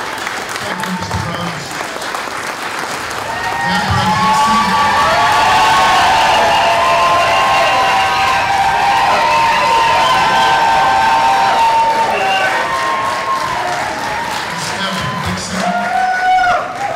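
Audience applauding, with many voices cheering and whooping over it; the cheering swells about four seconds in and eases off near the end.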